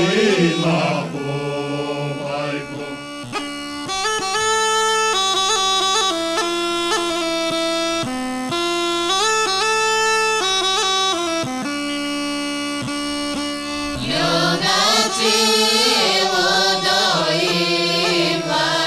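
A group's singing ends in the first second, then a Rhodope kaba gaida, a large goatskin bagpipe, plays a melody moving in steps over a steady drone. The voices come back in at about 14 seconds, over the bagpipe.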